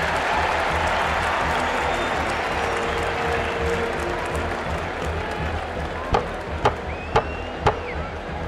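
A crowd in a hearing room applauding and clamouring, then four sharp knocks about half a second apart, a gavel calling the room to order.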